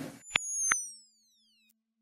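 Electronic logo-sting sound effect: two short clicks, then a thin, high tone falling steadily in pitch for about a second and fading out, over a faint low hum.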